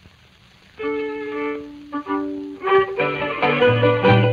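Old-time Ukrainian village band recording from the late 1920s or early 1930s. After a brief near-quiet gap, a fiddle plays long held notes from about a second in, and the full band with a bass line joins near the end, starting a kozak dance tune. The sound is narrow and dull, as on an early record.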